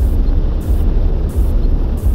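Attack helicopter in low flight, heard from a camera mounted on its fuselage: a steady deep drone of engines and rotors, with a hissing swell about every two-thirds of a second.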